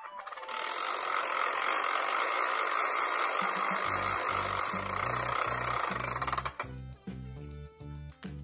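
A loud, even rattling noise that cuts off suddenly about six and a half seconds in. Background music with a repeating bass line comes in under it about four seconds in.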